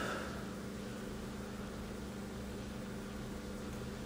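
Steady low hum with faint hiss: room tone, with no distinct handling sounds.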